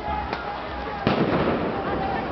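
A faint crack, then about a second in a single sharp, loud explosive bang with a long echoing tail, over voices, amid a street riot.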